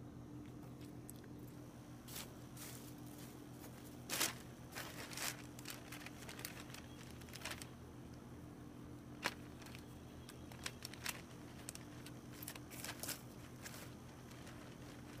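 Plastic sheeting crinkling and rustling in short, scattered spurts as split pieces of old garden hose are pressed over it onto a half-inch PVC frame, over a faint steady hum.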